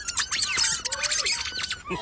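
Squeaky rubber chicken toys strapped under people's feet squealing as they are stepped on: many short, high-pitched squeaks in quick succession, overlapping.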